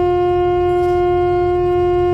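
Alto saxophone holding one long, steady note, the last step of a short falling phrase, with a low rumble underneath.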